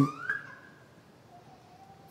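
A man's voice trailing off the end of a spoken phrase into the hall's reverberation, then near silence with a faint thin tone in the background.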